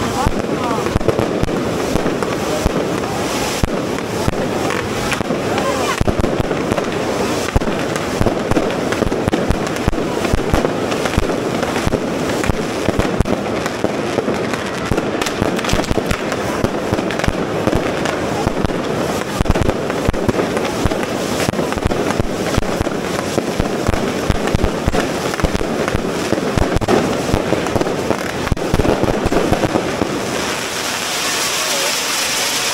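Correfoc fireworks: spark fountains going off together in a steady, dense rush of noise, punctuated all through by many sharp firecracker bangs.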